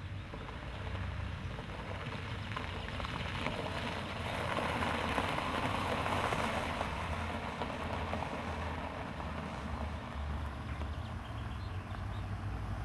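A car rolling over gravel past the camera, its tyres crunching on the loose stones; the crunching swells as the car comes close, loudest about halfway through, and fades as it moves away, over a low rumble.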